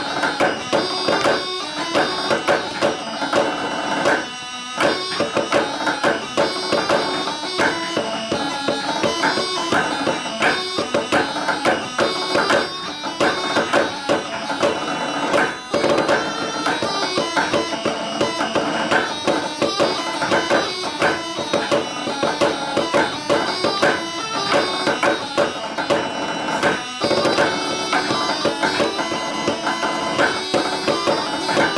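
A small ensemble playing a hornpipe tune with all parts together, mallets striking out a brisk, steady rhythm under pitched melody lines.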